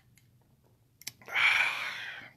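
A person drinking from a wine glass: near silence, then a sharp click about a second in, followed by about a second of breathy rushing air at the mouth.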